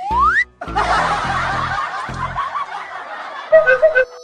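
Comic sound effects over background music with a steady low beat. A quick rising whistle sweeps up in the first half second, then a group of people laughs for about three seconds, like a laugh track.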